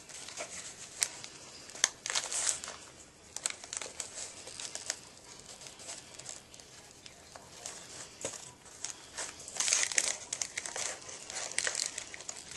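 Cellophane treat bag crinkling as a ribbon is knotted around its top, in crackly rustles with light clicks and louder spells about two seconds in and near the end.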